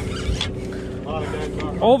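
Steady drone of a sportfishing boat's engine under background voices of anglers crowded at the rail, with a man shouting 'over' near the end.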